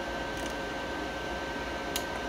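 Steady low hum with a thin high whine from a powered-on inverter multi-process welder, its cooling fan running, and a faint click near the end as a front-panel button is pressed.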